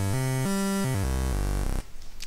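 Patchblocks mini-synthesizer playing a stepped approximation of a sawtooth wave, shaped by eight fader positions, in a run of short low notes that climbs and then comes back down. It cuts off suddenly near the end.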